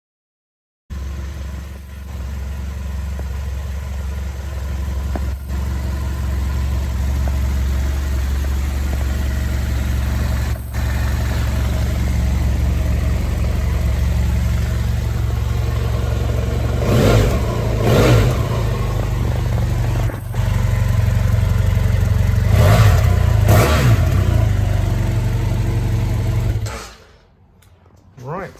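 The parallel-twin engine of a 2013 BMW F800R motorcycle idling steadily, revved in two quick pairs of throttle blips in the second half. The sound cuts off abruptly just before the end.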